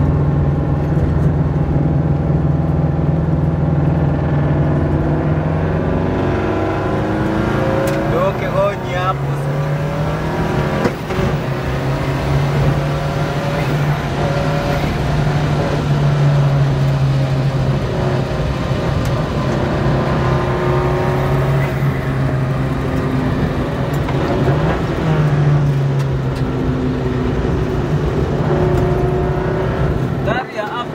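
Rally car engine heard from inside the cabin while driving, running steadily for stretches, its pitch rising and falling with throttle and gear changes.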